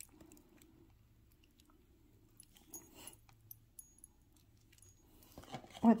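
Faint, scattered clicks and small metallic clinks of a gold-tone link bracelet handled in the fingers, its loose clasp being worked.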